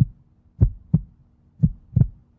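Heartbeat sound effect: paired low thuds, lub-dub, about one beat a second, three beats over a faint low hum.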